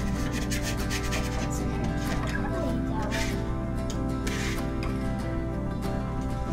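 Background music with sustained notes, over a spatula scraping in short strokes, the clearest two about three and four and a half seconds in.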